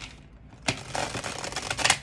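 A deck of tarot cards being shuffled by hand: a rapid flurry of card clicks that starts a little under a second in and lasts about a second.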